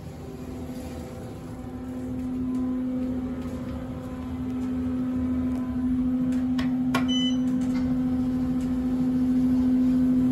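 Steady electrical hum inside an Otis hydraulic elevator cab, growing louder toward the end. A single click with a brief high beep comes about seven seconds in.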